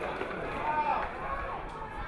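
Distant men's voices calling and shouting across an outdoor rugby league pitch during play, faint against the ground's open-air background noise.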